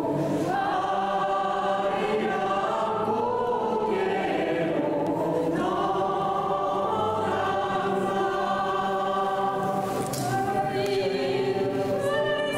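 A small choir of nuns and priests singing a slow hymn together, holding long notes and chords.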